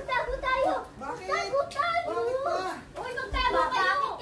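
Children's voices: excited, high-pitched shouting and chatter.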